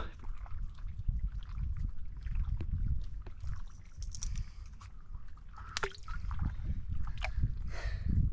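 Shallow seawater sloshing and dripping around hands working a speared stingray as its barb is worked out, over a low rumble, with scattered small clicks and one sharp click about six seconds in.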